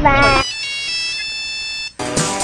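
Mobile phone ringtone: high electronic tones stepping between pitches for over a second and cutting off suddenly just before the end, after a brief wavering, warbling sound at the start.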